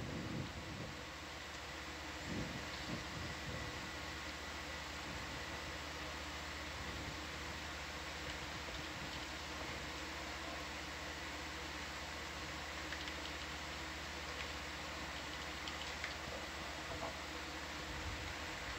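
Steady background hiss with a low electrical hum and a faint thin high tone: the equipment and room noise of an ROV control room's audio feed.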